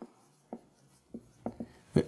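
Whiteboard marker writing on a whiteboard: about six short, separate strokes, the loudest near the end.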